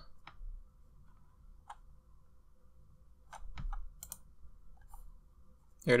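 A few sharp clicks of a computer mouse and keyboard against quiet room tone: a lone click under two seconds in, then a scattered cluster between about three and five seconds in.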